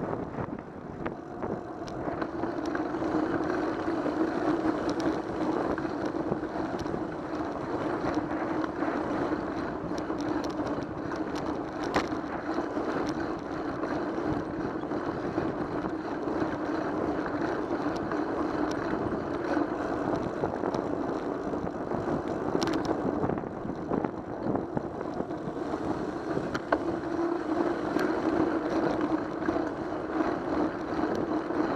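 Steady rushing road and wind noise on a bicycle-mounted camera's microphone as the bike rolls along a paved street, with a steady low hum and a few sharp clicks.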